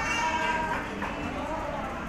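Several women's voices talking over one another, with a high-pitched drawn-out voice in the first half.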